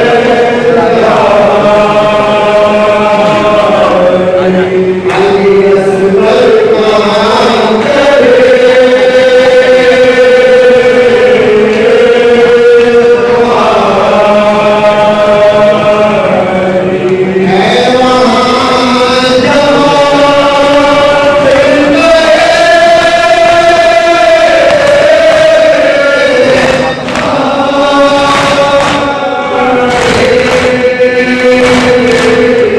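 A crowd of male mourners chanting a noha together during matam, in long, drawn-out lines of a few seconds each, the pitch stepping up and down between lines with brief breaks between phrases.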